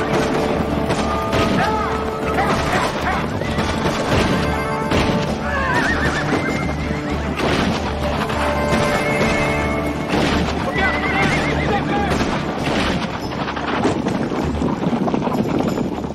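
Action-film soundtrack mix: dramatic music under horses galloping and whinnying, with wavering whinnies about six seconds in and again about ten seconds in.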